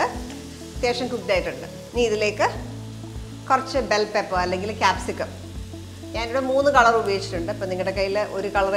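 Button mushrooms and garlic frying in butter and oil in a pan, sizzling.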